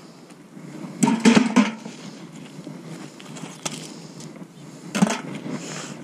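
Muddy scrap metal being pulled off a strong fishing magnet: a burst of scraping and clattering metal about a second in, then a sharp click and a knock near the end.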